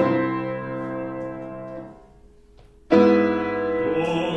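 Grand piano playing sustained chords. One chord rings and fades over about two seconds, then after a short pause a second chord is struck and held near the end.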